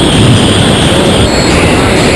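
Airflow rushing over a wrist-mounted camera's microphone during a tandem parachute descent under canopy: a loud, steady rumble.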